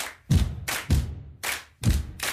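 Percussion-only intro beat of a pop song: kick-drum thumps alternating with sharper clap-like hits in a steady rhythm, about four hits a second.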